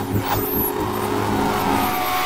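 Channel logo ident sound design: a steady low musical drone under a rushing, whooshing noise that builds toward the end.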